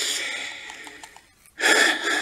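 A man's audible breathing close to the microphone during a pause in speech: a breath at the start that fades over about a second, then a sharp intake of breath about one and a half seconds in.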